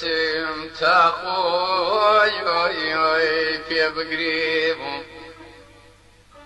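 A male singer in Kurdish folk style holding long, wavering, heavily ornamented notes over a steady low accompanying tone. The singing fades out about five seconds in.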